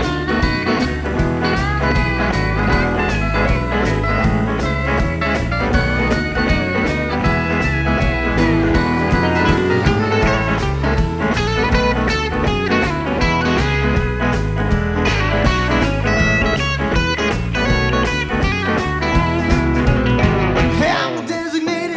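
Country band playing an instrumental break with no singing: drums keeping a steady beat under bass and guitars, with a pedal steel guitar playing sliding notes.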